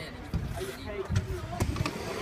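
Stunt scooter rolling over skatepark concrete, with a few short knocks from the wheels and deck, under background voices.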